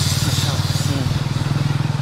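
A two-wheeler's small engine running steadily under way, a low, fast, even pulsing hum, with wind buffeting the microphone during the first second.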